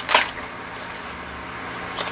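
Tarot cards being handled and shuffled by hand: a sharp snap of cards just after the start, then soft rustling.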